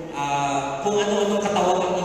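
A man's voice chanting in long, held notes that step to a new pitch about a second in and again near the end.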